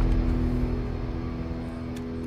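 Film soundtrack drone: a low chord of steady held tones over a rumble, slowly fading in the wake of a loud impact.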